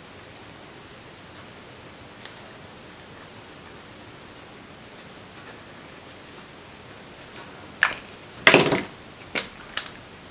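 Steady low hiss, then near the end a handful of sharp plastic clicks and knocks, the loudest a quick cluster of several. These are paint-marker pens being capped, uncapped and set down on the table as one pen is swapped for another.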